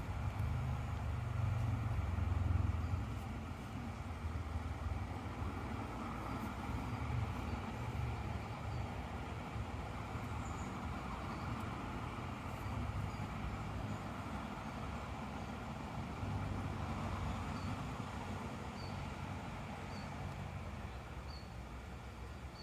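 Shallow river running over rocks, with gusts of wind rumbling on the microphone. A small bird chirps over and over, about once a second, in the second half.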